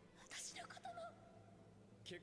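Near silence, with a faint voice speaking briefly in the first second.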